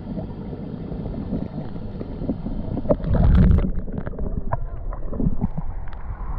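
Water moving around an action camera in a swimming pool, heard muffled through its waterproof housing, with a loud surge about three seconds in, followed by scattered splashes and drips.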